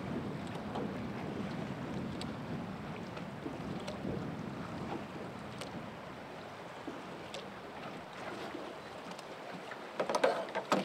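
Steady rush of river water around a boat, with wind buffeting the microphone and a few faint clicks.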